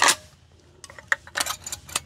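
Metallic clicks and clacks of a Marlin 1895 lever-action rifle's action being handled as it is loaded: one click right at the start, then a quick cluster of several clicks about a second in.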